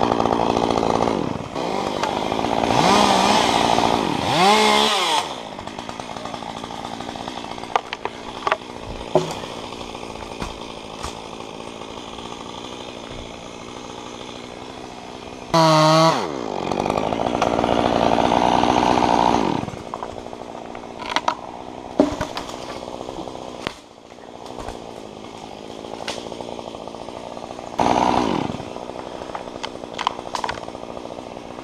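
Top-handle chainsaw cutting through a western hemlock stem at full throttle in several bursts, revving up and dropping back to a lower idle between cuts. The longest cuts come at the start and about halfway through, with a short one near the end.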